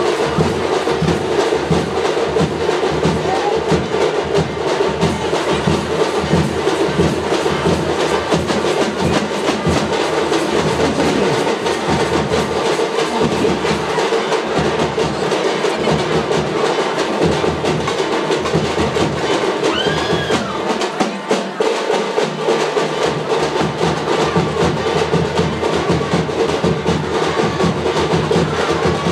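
Festival music led by drums: fast, steady drum strokes over a sustained held tone, continuing throughout.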